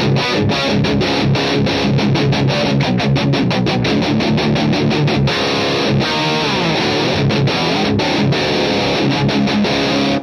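Distorted electric guitar playing a fast, tight metal riff, with rapid sharply picked notes and chords and a few descending runs. The sound is a Plexi-style amp pushed into high gain by a Klon-style boost/overdrive pedal.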